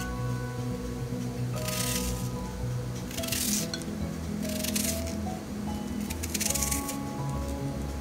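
Background music, over which a kitchen knife slices through a red onion held in the hand four times, each cut a short crisp rasp about half a second long.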